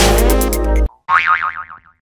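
Electronic background music with a heavy bass beat that cuts off suddenly about a second in, followed by a cartoon-style "boing" sound effect whose pitch wobbles up and down as it fades away.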